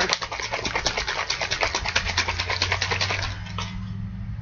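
Plastic bottle of flavoured water being shaken hard, the liquid sloshing in quick even strokes about ten times a second to mix the drink; the shaking stops a little past three seconds in.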